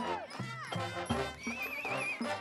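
Marching band playing: horns with pitch glides and a wavering high note near the end over regular low drum hits.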